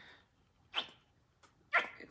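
Two short sounds about a second apart, the second louder, as paint and air are squeezed out of a nearly empty plastic bottle of acrylic craft paint.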